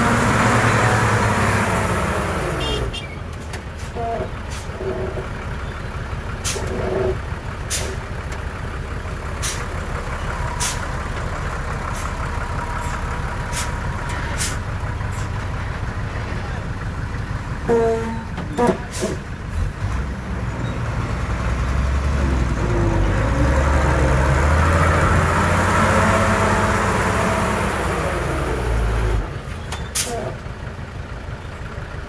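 Heavy diesel truck engine running, its note swelling and falling near the start and again over the last several seconds, with a string of sharp clicks and knocks in the quieter middle stretch.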